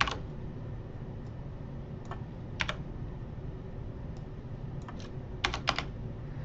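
Sparse computer keyboard keystrokes: one at the start, two or three about two to two and a half seconds in, and a quick run of three or four near the end, over a steady low background hum.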